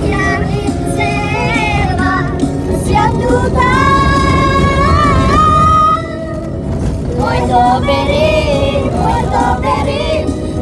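Young men singing loudly inside a moving car, one voice holding a long high note from about four to six seconds in, over the car's steady low road rumble.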